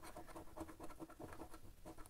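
A coin scraping the coating off a paper lottery scratch card in a faint, rapid run of short strokes.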